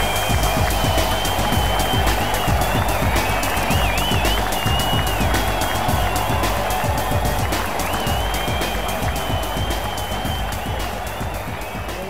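Music with a steady beat and a high, wavering melodic line, fading out over the last few seconds.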